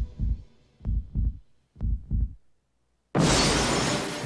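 Heartbeat sound effect: three low double thumps, about a second apart. After a moment of silence a sudden loud crash cuts in about three seconds in.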